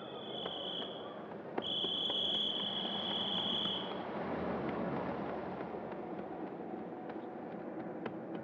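A police whistle blown twice, a short blast and then a longer one of about two seconds, over steady street noise.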